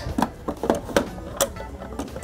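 Plastic clicks and knocks from the water reservoir of a Melitta Caffeo Lattea espresso machine being handled and lifted out through the top, a string of short sharp ticks at uneven spacing.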